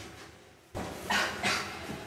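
A person's voice letting out two short, loud yelp-like outbursts about a third of a second apart, starting suddenly just under a second in.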